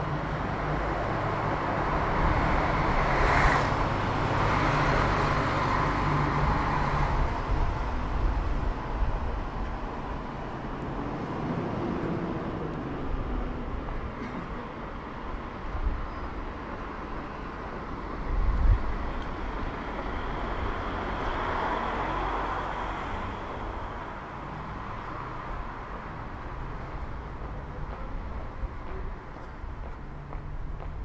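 City street traffic: cars pass with a rise and fall of tyre and engine noise, once in the first seconds and again about twenty seconds in, over a steady low rumble. A short low thump comes about eighteen seconds in.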